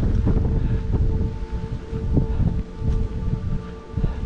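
Wind buffeting the microphone, a heavy uneven rumble, with a faint steady hum underneath.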